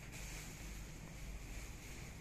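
Faint steady background noise: a low hum with a light hiss and no distinct events.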